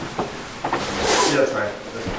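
A hotel room door being handled: a couple of small wooden knocks and clicks, then a short breathy hiss about a second in.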